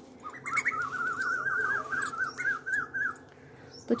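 A bird calling: a quick warbling run of rising-and-falling notes that lasts about three seconds and stops shortly before the end.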